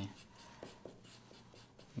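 Felt-tip pen drawing on paper: faint scratching of the tip with a few short, separate strokes.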